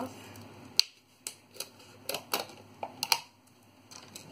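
A series of sharp plastic clicks and taps, the loudest about a second in and a quick pair near the end, as lids are pulled off acrylic paint bottles and the bottles and cups are handled.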